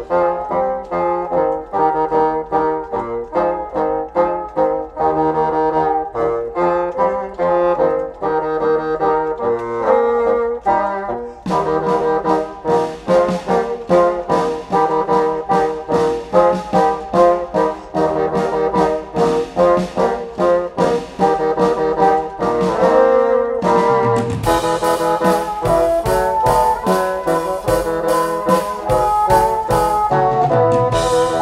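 Bassoon quartet playing a lively arrangement in short, detached notes. The texture grows fuller about eleven seconds in, and the note attacks turn sharper and brighter from about twenty-four seconds in.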